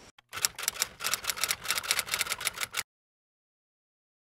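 Typing sound effect: a quick, uneven run of key clicks lasting about two and a half seconds, then stopping abruptly.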